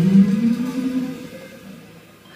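A small jazz band of tenor saxophone and double bass ends a tune on a low final note, held about a second and then dying away.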